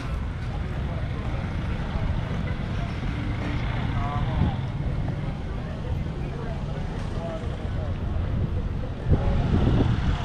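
Wind buffeting the camera's microphone, a steady low rumble that gusts harder near the end, with faint voices of passers-by underneath.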